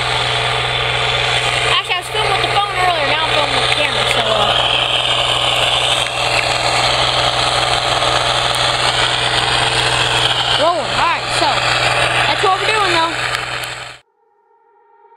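Tractor engine running steadily while pulling a disc harrow, a constant low hum, with brief indistinct voice sounds over it.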